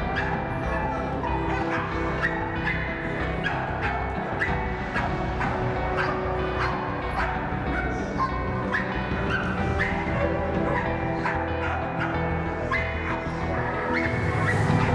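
Background music with held tones, over dogs barking: many short, sharp barks at an irregular pace.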